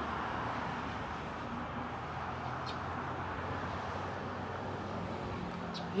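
Steady outdoor street ambience: a low, even hum of traffic, with faint distant voices now and then.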